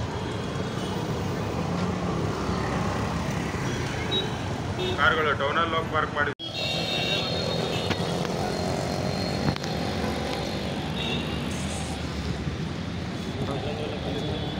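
Steady city traffic noise heard from a moving bicycle: passing cars and autorickshaws, with a voice or horn briefly standing out near the middle. The sound cuts out for an instant about halfway through.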